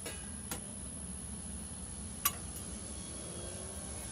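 Small clicks from hand tools and the panel's metal cover plate being handled: a faint click about half a second in and a sharper one a little past two seconds, over a steady low hum.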